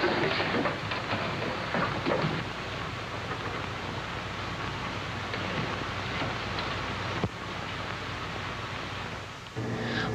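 Steady rushing noise from an old film soundtrack, with faint indistinct voices in the first couple of seconds and a single click about seven seconds in.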